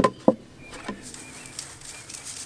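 Crushed oyster shell tipped from a plastic tub into a metal sieve over a metal tray: two sharp knocks in the first half second, then quieter with birds chirping faintly in the background.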